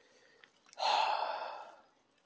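A person sighing: one long breath out about three-quarters of a second in, fading away over about a second.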